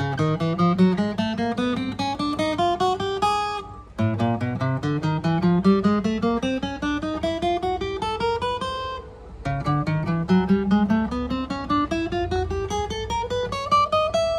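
Enya EGA-X1pro acoustic guitar picked one note at a time, fret by fret up the neck, in three steady rising runs of about four seconds each. This is a fret check, and the notes ring clean with no fret buzz and no dead frets.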